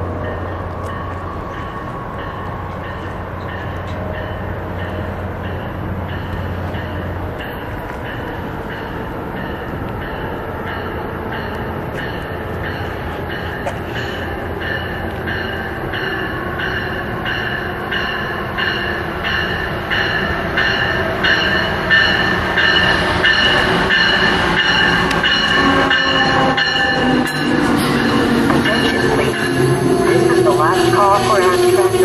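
Amtrak Northeast Regional train, led by an ACS-64 electric locomotive, approaching and pulling into the station. It grows steadily louder, with a regular rapid pulsing throughout, and wheels squealing near the end as the cars roll past.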